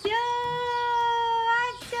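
A person's voice holding one long, steady high note for nearly two seconds, breaking briefly near the end and starting again at the same pitch.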